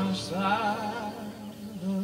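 Live band music: a high singing voice holding notes with a wide vibrato over guitars and a steady low sustained note.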